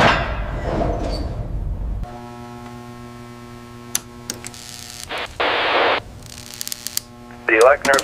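A low rumble for the first two seconds, then a steady electrical hum of vacuum-tube radio equipment with several tones stacked together, broken by a few sharp clicks and a burst of static hiss about five seconds in.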